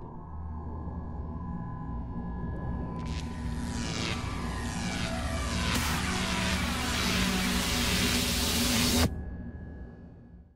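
Animated sound effect of a phone call's signal speeding through the wires. A low electronic rumble with a steady hum swells into a rushing whoosh full of sweeping glides, growing louder for several seconds. It cuts off sharply about nine seconds in and quickly fades.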